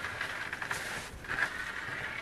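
A wood sheathing panel scraping and rubbing against the others as it is slid up off a leaning stack, with a louder surge about halfway through.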